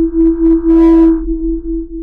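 Outro logo sting: one loud, steady electronic tone held at a single pitch over a low hum, with a brief whoosh about three-quarters of a second in.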